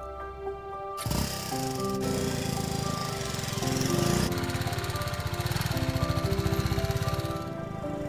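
BMW G310 GS single-cylinder engine starting about a second in and running with a fast, even beat of firing pulses that fades near the end, under background music.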